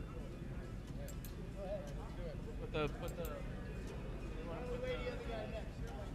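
Indistinct background talk from several people over a steady low hum, with a few light clicks.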